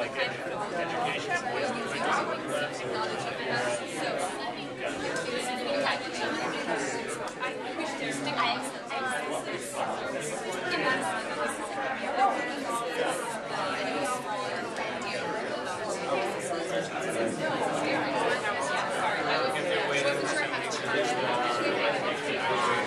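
Many people talking at once in small-group conversations, a steady hubbub of overlapping voices in a large room with no single voice standing out.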